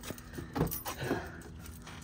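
A bunch of keys jingling, a few short light clinks in the first second or so, as someone gets set to climb into a pickup.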